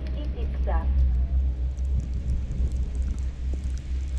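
Wind buffeting an action camera's microphone: a steady low rumble. A short snatch of a voice comes in under a second in.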